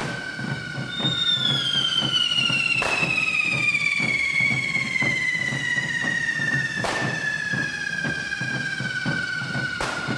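Carretilles, hand-held correfoc fireworks, spraying sparks and whistling. Two overlapping whistles fall slowly in pitch, one starting about a second in. Sharp bangs go off about three seconds in, again about seven seconds in and at the end, over a low rhythmic beat.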